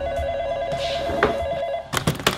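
Corded desk telephone ringing with a fast electronic warble, cut off near the end by the clatter of the handset being lifted.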